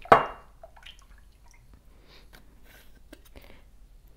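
Silicone spatula stirring a milk mixture in a large glass measuring cup: faint drips and small liquid sounds, after one brief louder sound right at the start.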